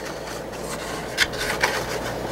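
Paper rustling and rubbing as hands handle a folded paper bag, with a couple of short crinkles a little past halfway.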